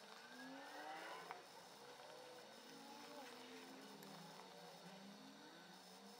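Near silence: room tone, with faint wavering tones in the background.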